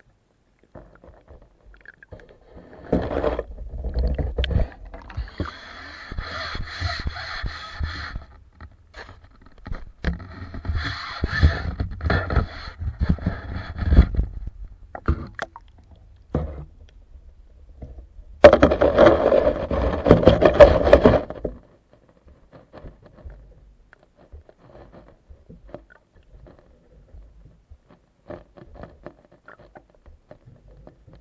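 Scraping, crunching and clicking heard through an underwater camera's waterproof housing as carp and small fish feed over the gravel lakebed right at the camera. It comes in three bursts of a few seconds each, the last the loudest, with only faint ticks between them and after them.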